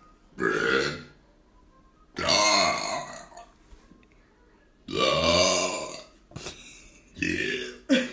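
A person belching loudly, four burps in a row with short pauses between, the second and third the longest.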